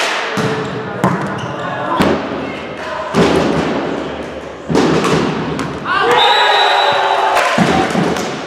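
Volleyball being struck and hitting the hall floor during a rally: four sharp smacks about a second apart, followed by players shouting.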